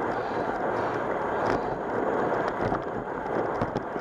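Steady rushing noise of a bicycle on the move: wind on the microphone and tyres rolling over cracked asphalt, with a few faint clicks.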